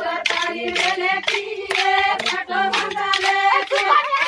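A group of women singing a Banjara Holi folk song together, over steady rhythmic hand claps.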